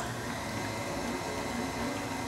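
KitchenAid stand mixer running at a raised speed, its beater churning key lime pie filling in the stainless steel bowl: a steady motor sound with a faint high tone.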